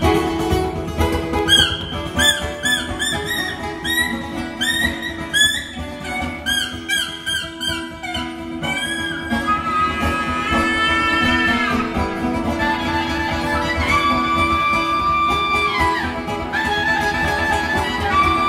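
Live acoustic music: two acoustic guitars accompany a wind-instrument melody. The melody plays quick, sliding ornamented notes at first, then long held notes from about halfway through.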